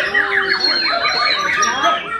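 White-rumped shamas (murai batu) singing, several birds at once in rapid whistled phrases of quick rising and falling notes, over people talking.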